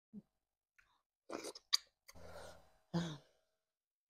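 Close-miked chewing and wet lip smacks from a person eating catfish pepper soup, in a few short, separate bursts with one sharp click about halfway through.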